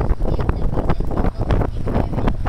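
Wind buffeting the camera's microphone: a loud, uneven rumble that surges in gusts.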